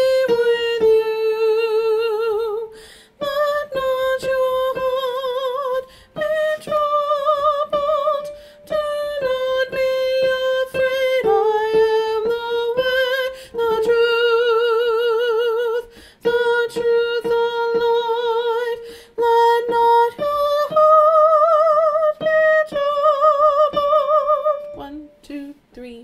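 A single voice singing the tenor line of a choral anthem in short phrases with brief breaks between them, with a marked vibrato on the held notes.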